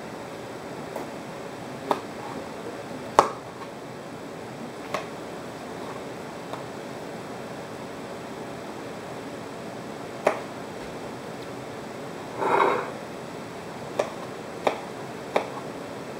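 Kitchen knife and cut cucumber knocking on a cutting board and a ceramic bowl: scattered single sharp knocks over a steady hiss, a brief scraping sound about twelve seconds in, and a closer run of knife chops on the board near the end.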